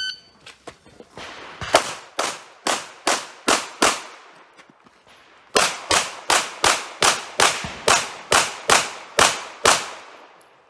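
A shot timer's short electronic start beep, then rapid handgun fire in two strings. About six shots come in roughly two seconds, then after a pause of under two seconds about eleven more shots follow at a similar fast pace.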